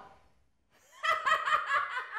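A woman laughing loudly, starting about a second in after a brief hush, in a quick run of repeated ha-ha pulses.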